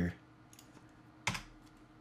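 Near silence broken by a single sharp click about a second in, from a computer keyboard or mouse being worked at a desk, with a couple of fainter ticks before it.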